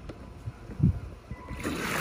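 A low thump a little under a second in, then a rushing splash of water about three-quarters of the way through, as the Aiper cordless robotic pool cleaner starts shooting a jet of water up from its top.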